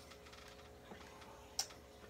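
Quiet room tone with a faint steady hum, broken by two light clicks of something being handled out of view, the sharper one about a second and a half in.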